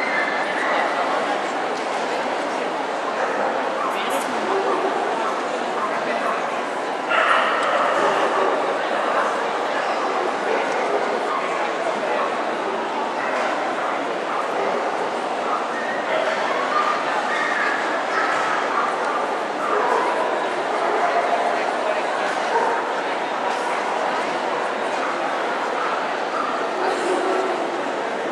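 Dogs yipping and whimpering over continuous crowd chatter, which gets louder about seven seconds in.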